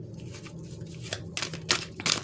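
A deck of tarot cards being shuffled by hand, the cards slapping and sliding against each other in a run of soft, irregular clicks, with one sharper snap near the end.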